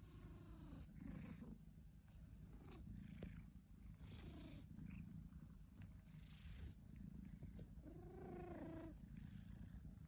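A long-haired, flat-faced cat purring softly and steadily close to the microphone, with a brief soft pitched call about eight seconds in.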